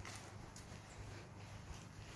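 Faint footsteps walking across a grass lawn, about two steps a second.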